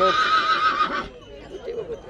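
Horse whinnying: one shrill, high call held for about a second with a slightly falling pitch, cut off about a second in.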